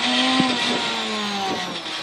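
Ford Fiesta RWD rally car's engine off the throttle with revs falling steadily as the car slows for a tight chicane, heard from inside the cabin. A single knock about half a second in.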